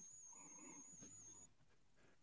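Near silence: room tone with a faint, thin high-pitched whine that stops about one and a half seconds in.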